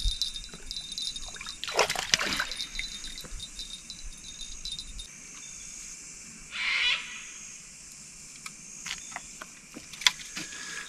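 A Murray cod being released into shallow river water, splashing about two seconds in, with water trickling after it and a shorter noise a few seconds later. Insects trill steadily in the background.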